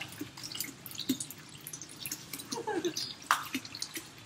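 A quiet room with a few faint voice fragments and scattered small clicks and taps. One sharper click comes just past three seconds in.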